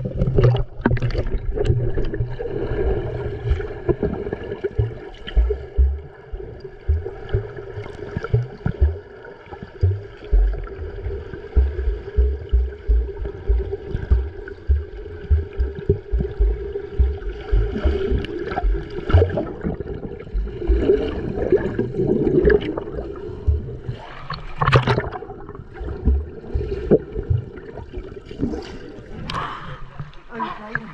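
Muffled underwater sound of swimmers moving through the water: bubbling and churning with frequent dull low thumps from kicking, over a steady hum. A few sharper splashy bursts come in the second half.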